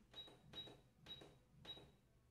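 Sewing machine making four short clicks about half a second apart, each with a thin high tone.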